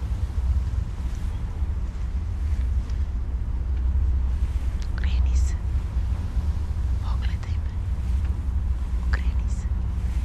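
Steady low rumble of a ship underway at sea, the loudest sound throughout. Three short, faint whispers break over it about halfway in, near three-quarters and near the end.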